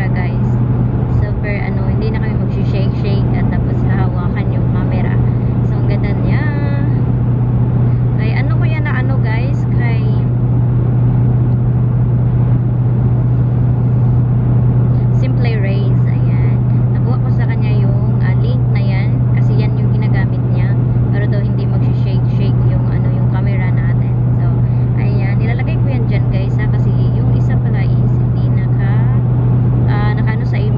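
Steady low drone of road and engine noise inside a moving car's cabin, running evenly throughout.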